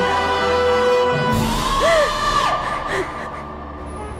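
A sad drama score of held tones, with a wailing voice that rises and falls about a second and a half in. The music drops quieter near the end.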